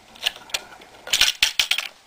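Light clicks and rattles from the wing-nut strap fastener on a scale-model tank toolbox as fingers work it: a couple of single clicks, then a quick run of them in the second half.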